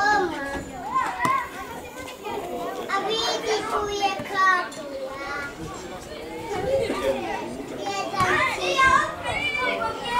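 Young football players shouting and calling out during play: high children's voices, several at once in places, in short loud bursts.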